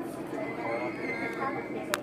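Passengers' voices in a Downtown Line MRT train cabin over the steady running noise of the train slowing into a station, with a high thin squeal from the train for about a second in the middle and a sharp click near the end.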